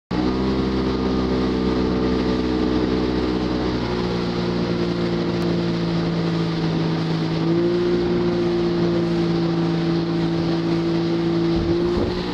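Towing motorboat's engine running steadily at speed, with water and wind noise. The engine note drops slightly about four seconds in and rises a little again about halfway through.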